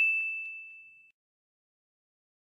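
A single bright, bell-like ding fading away over about a second, then silence.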